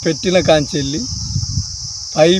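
Steady high-pitched chirring of field insects such as crickets, unbroken throughout, with a man's voice over it in the first second.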